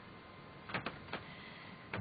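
A few light clicks and knocks, four in about a second and a quarter, over a faint steady hiss.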